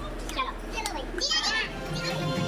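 Children's voices and chatter, with a child's high-pitched call about a second and a half in.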